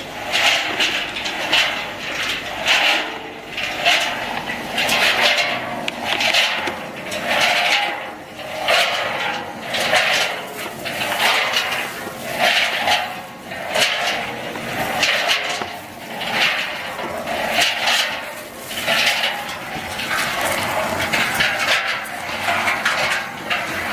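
Peanuts tumbling and sliding inside a rotating stainless-steel spiral mixing drum, a rattling rush that swells and fades in an even cycle about every second and a half as the drum turns.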